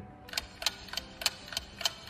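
Clock-ticking sound effect: an even run of sharp ticks in close pairs, about three times a second, starting a moment in. It works as a 'thinking' cue while a question is pondered.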